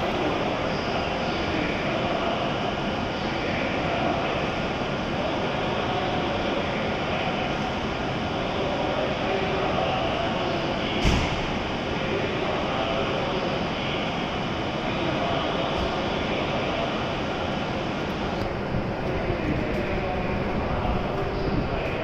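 Steady hum of a W7 series Shinkansen standing at the platform with its doors open, under the echoing noise of the station hall, with one sharp knock about halfway through.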